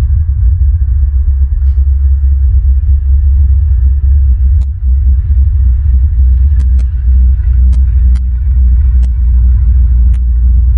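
Wind buffeting an outdoor nest-cam microphone: a loud, unsteady low rumble, with a few faint sharp clicks in the second half.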